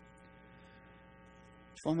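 Faint, steady electrical mains hum from the microphone and sound system, several steady tones layered together. A man's voice comes back in near the end.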